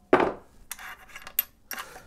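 Metal clinks and taps from the windlass crossbow's bow fittings as its wedges are tapped out to free the bow: one sharp ringing strike just after the start, then several lighter clinks.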